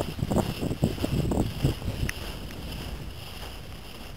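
Wind rumbling on the microphone, with a run of soft, uneven thuds in the first second and a half, then a steadier, quieter rumble.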